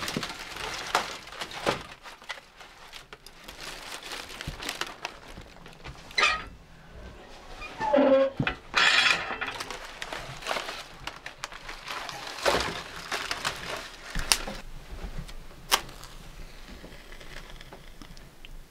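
Irregular knocks and clunks of split firewood being picked out of a wood box and loaded into a steel box wood stove. Near the end comes the metallic clank of the stove door and its latch.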